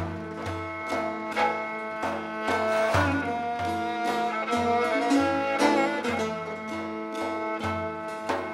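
Persian classical trio playing an instrumental passage: kamancheh bowing held melodic notes over plucked setar, with deep strokes on a large frame drum about once or twice a second.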